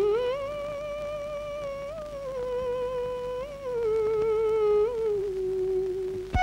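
A woman's voice humming a slow, wordless melody in long held notes with small turns between them, rising at first and then gradually stepping down in pitch.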